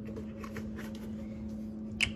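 Faint light clicks and rustles of a drink carton being handled and its cap opened, over a steady low hum.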